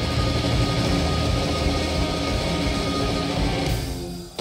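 Live mathcore band playing loud distorted guitars, bass and drums, with no singing heard. Near the end the full-band playing drops away, leaving ringing guitar notes.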